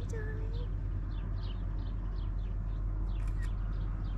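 A small bird chirping over and over, short downward-sweeping chirps about three a second, over a steady low hum.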